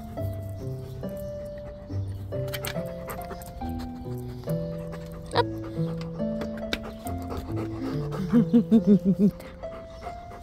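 A sheepadoodle panting over background music of held, stepping notes, with a few short clicks. Near the end a person laughs in a quick run of about six loud bursts.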